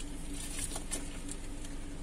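Light rustling and small clicks of a phone being handled against clothing inside a car, over a steady low hum.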